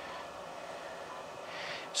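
Steady low whir of a Diowave high-power therapy laser unit's cooling fan running during treatment. A short breath is heard near the end.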